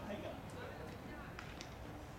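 Faint voices talking in the background, with a few light clicks.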